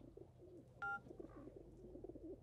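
Pigeons cooing faintly in the background, with a single short electronic beep from the mobile phone about a second in.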